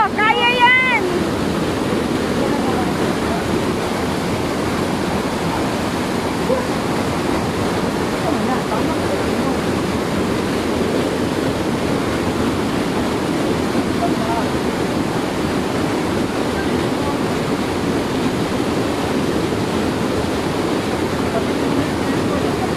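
Steady rushing of waterfall water cascading over rocks. A brief, high-pitched voice call sounds in the first second.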